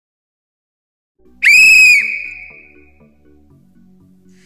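A single loud, high whistle blast about half a second long, a second and a half in, dipping in pitch as it cuts off and then echoing away. Quiet music plays underneath.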